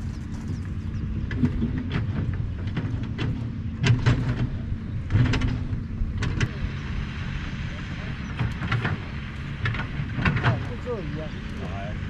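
A steady low motor hum running throughout, with several sharp knocks or clicks at irregular moments.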